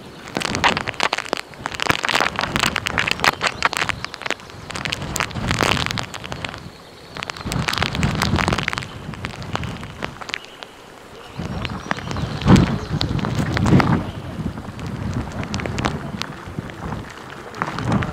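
Strong wind gusting over the microphone in monsoon rain, with rough low rumbling and spattering. It comes in surges that swell and die away every few seconds.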